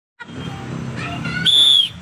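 A single short whistle blast, one steady high note lasting under half a second near the end, as the start signal for children to run. Children's voices chatter before it.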